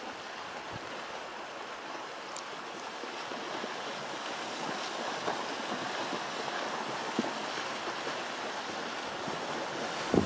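A steady rushing noise that slowly grows louder, with a few faint clicks.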